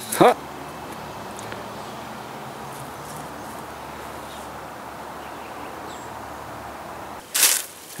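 Steady outdoor background noise with no distinct events, broken about seven seconds in by a brief loud burst of noise.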